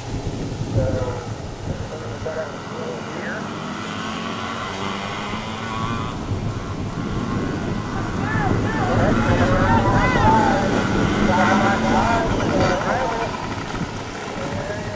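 Several small youth dirt bikes racing on a dirt flat track, their engines rising and falling in pitch as the riders throttle through the turns, louder in the second half, with people's voices mixed in.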